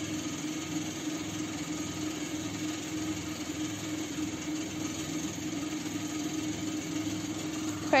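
A steady background hum with a constant low tone running under it.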